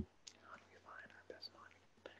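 Near silence with faint whispered speech, a man murmuring under his breath, and a soft low thump at the very start.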